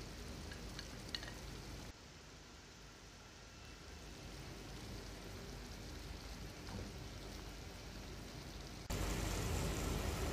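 Thick masala gravy with fried fish pieces simmering in a frying pan, a faint steady sizzling hiss.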